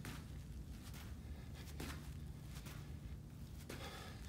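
Sneakers landing on artificial turf during side-to-side jumps: a few soft landings about two seconds apart, over a low steady hum.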